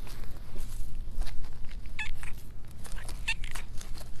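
A grey cat giving short meows while being stroked, one about two seconds in and more near the end, over a steady low rumble.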